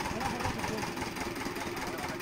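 An engine idling steadily, with a fine, even pulse.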